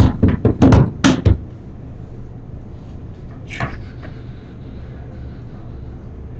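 A quick run of about six sharp knocks in just over a second, then a single knock about three and a half seconds in.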